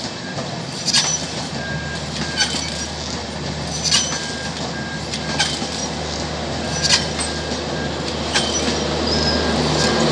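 Passenger train coaches rolling past with a steady rumble, wheels clicking over rail joints about every second and a half. Near the end the luggage-brake-and-generator car comes by and a steady generator hum grows louder.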